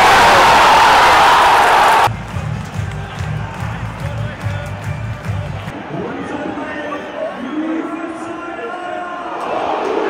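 Football stadium crowd roaring in celebration of a goal, cut off abruptly about two seconds in. A low pulsing music beat follows for a few seconds, then quieter crowd noise with voices, which swells again near the end.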